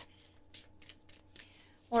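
Oracle cards being shuffled by hand: a quick, irregular run of soft card flicks and slaps, faint, thinning out towards the end.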